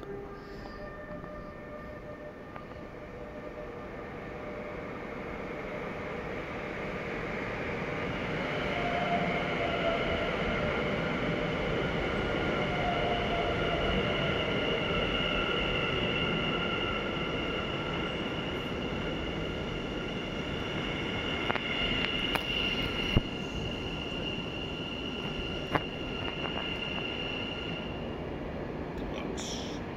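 NS Sprinter Nieuwe Generatie (SNG) electric train arriving: a rolling rumble of wheels on rails that grows louder over the first ten seconds, with a steady high electric whine from its drive that holds to the end. A few sharp clicks come near the end.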